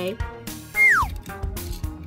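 Background music, and about a second in a short, loud falling whistle-like tone: a cartoon exit sound effect as the toy truck leaves.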